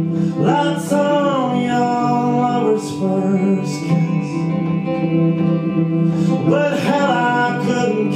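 Live roots band playing a slow song: strummed and picked guitars, with sung voice lines about half a second in and again near the end.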